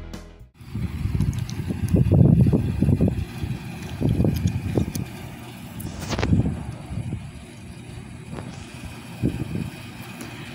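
Intro music cuts off about half a second in. Then wind buffets the microphone in irregular low rumbling gusts that rise and fall, with one sharp click near the middle.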